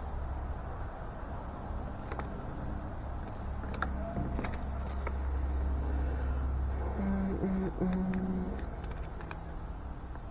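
A few light clicks and rustles of paper cards and plastic packaging being handled, over a steady low rumble that swells in the middle.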